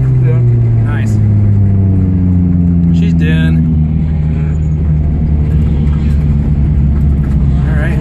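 A four-cylinder drift car's engine heard from inside the cabin, its note falling over the first few seconds as the car slows, then running steadily at lower revs.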